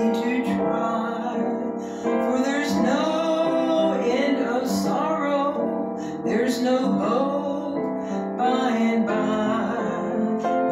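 Upright piano playing a slow gospel hymn, with a woman singing along over it.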